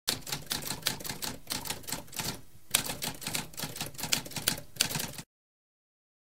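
Typewriter typing: rapid keystrokes with a short break about halfway through, cutting off suddenly a little after five seconds in.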